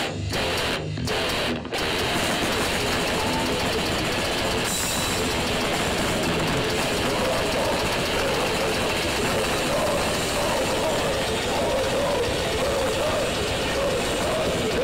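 A grindcore band playing live: heavily distorted electric guitar and bass with drums. It opens with a few stop-start hits with short gaps between them, then runs on as a continuous dense wall of sound.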